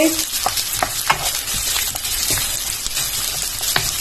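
Sliced carrots, red bell pepper and onion sizzling in hot oil in a nonstick pan while being stirred with a wooden spatula, which knocks against the pan a few times at irregular moments.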